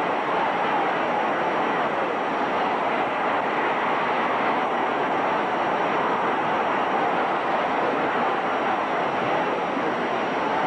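A large boxing-match crowd cheering as one steady, unbroken wash of noise.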